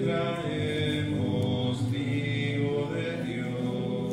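Slow sung hymn with long held notes, the offertory song during the preparation of the gifts at Mass.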